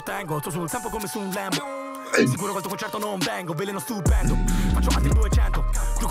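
Italian rap track playing: a rapper's verse over a hip-hop beat, the voice dropping out briefly a little before two seconds. About four seconds in, a deep sustained bass comes in and is the loudest part.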